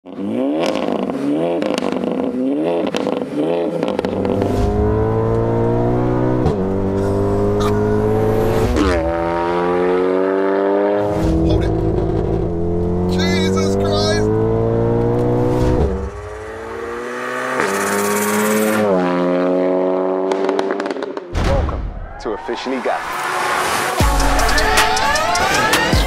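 A car engine accelerating hard, its revs climbing and then dropping at each upshift, over and over.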